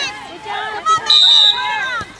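A referee's whistle, blown once in a steady high blast of about half a second, about a second in, signalling half time.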